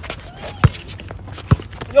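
A basketball dribbled on an outdoor asphalt court: two sharp bounces, a little under a second apart.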